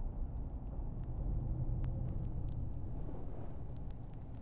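Low, steady background rumble with a few faint clicks: ambient sound with no music or speech.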